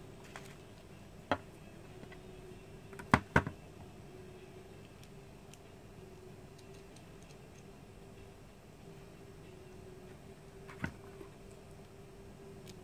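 Sharp clicks and knocks of the plastic parts of an LED light panel being handled and set down: one about a second in, two loud ones close together about three seconds in, and one near the end. A steady hum runs underneath.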